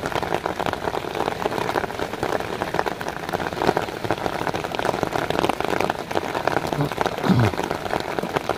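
Heavy rain falling steadily, a dense stream of close drop hits. Near the end there is one brief low sound that falls in pitch.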